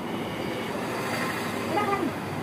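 Steady background rumble and hum, with a brief voice-like sound near the end.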